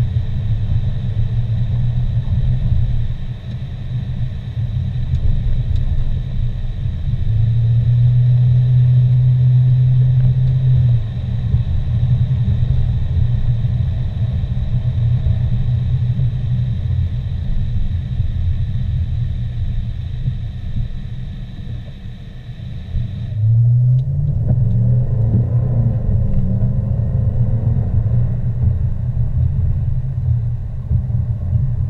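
Car engine and road noise from inside the car, a steady low rumble. It eases off about 22 seconds in, then the engine note rises as the car accelerates again.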